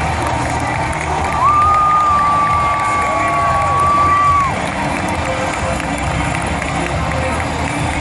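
Large arena crowd of wrestling fans cheering and shouting in a steady roar. About a second and a half in, one high-pitched call rises above the crowd, holds for about three seconds, then falls away.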